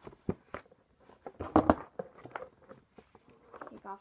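Rustling and sharp clicks of a doll's cardboard box and foam packing being handled and pulled apart, with the loudest burst about a second and a half in.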